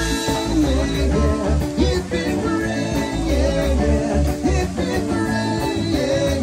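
Live band playing rock music without vocals, with a steady pulsing bass beat under sustained instrumental notes.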